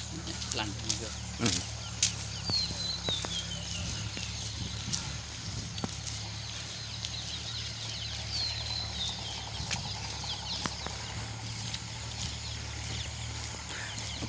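A bird calls twice, each call a short run of high notes falling in pitch, over a steady low machinery hum and light footsteps on brick paving.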